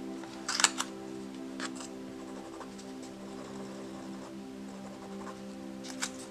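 Soft background music with steady sustained tones, over a few brief clicks and rustles of art supplies being handled on the desk, the sharpest cluster about half a second in and more near the end.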